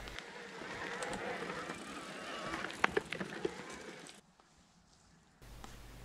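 Mountain-bike tyres rolling and crunching over a dirt forest trail as e-MTB riders pass close by, with a few sharp clicks and knocks from the bikes. The sound drops away about four seconds in.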